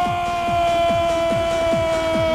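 A commentator's long, held goal shout ('goool') that falls slightly in pitch, over electronic dance music with a kick drum beating about three times a second.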